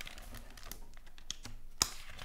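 Pages of a hardcover picture book being handled and turned by hand: a run of light paper clicks and rustles, with one sharper snap near the end.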